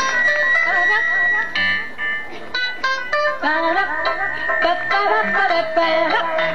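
Several women's voices singing together in a high register, with almost no band behind them after the drums and bass stop at the start.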